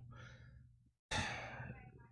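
A man breathes out heavily into a close microphone: a short fading breath at the start, then a longer sigh about a second in that trails away.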